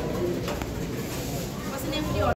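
Busy café ambience: indistinct voices of staff and customers over a steady low background hum.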